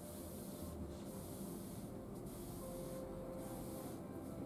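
Palms rubbing and pressing over a cloth towel laid on a person's back: a soft swishing of hands on fabric, in about four separate strokes.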